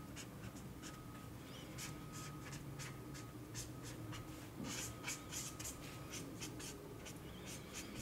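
A felt-tip marker drawing on paper: faint, short scratchy strokes in quick runs as lines are sketched in.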